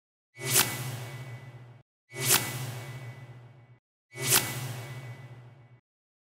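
Three identical whoosh sound effects, about two seconds apart. Each one swells quickly to a sharp peak and then fades away over a little more than a second.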